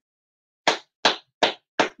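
Four sharp hand claps, evenly spaced about 0.4 s apart, starting just over half a second in.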